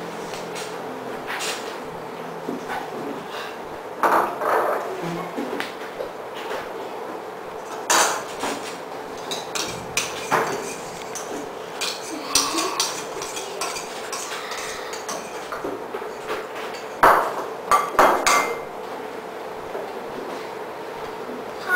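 A spoon and small ceramic bowls clinking and knocking against a glass mixing bowl while waffle batter is poured and stirred: scattered single knocks, with a quick run of the loudest ones near the end.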